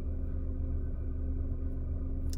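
Steady low hum inside a car cabin, with a faint steady tone above it.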